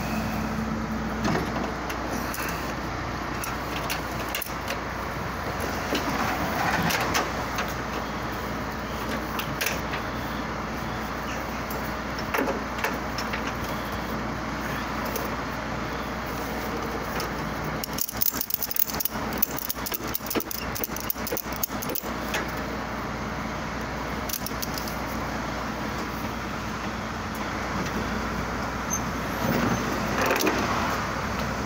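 Metal hooks and buckles of a wheel-lashing strap rattling and clinking, then a ratchet strap being cranked tight over a car's tyre, a quick run of clicks for about four seconds past the middle. Under it the recovery truck's engine idles steadily.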